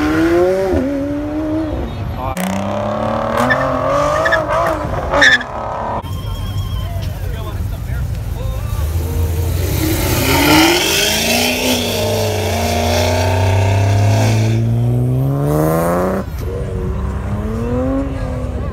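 Sports car engines revving and pulling away in several short clips. In the longest clip an engine's note climbs steadily in pitch as it accelerates.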